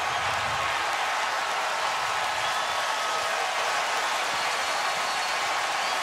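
Stadium crowd cheering and applauding, a steady roar of noise that holds level throughout.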